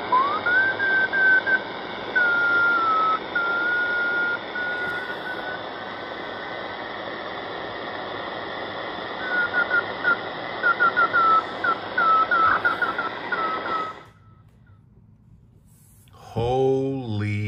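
Marc Pathfinder NR52F1 multiband receiver playing static with a weak 28.209 MHz beacon coming through as a keyed Morse code tone. The tone slides up into pitch just as it begins, then keys on and off, with a quick run of short dots and dashes in the last few seconds. The sound cuts off about 14 seconds in.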